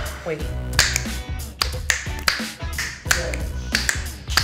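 Repeated sharp finger snaps over hip-hop funk backing music.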